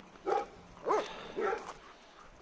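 A dog giving three short yips, each rising and then falling in pitch.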